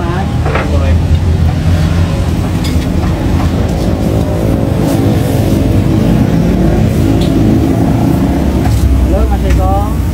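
Bus engine and road noise heard from inside the moving bus: a steady deep rumble, with the engine's drone growing stronger through the middle and later part.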